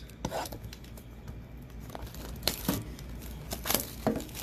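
Packaging of a hockey card tin torn and crinkled open by hand, with a few sharp crackles.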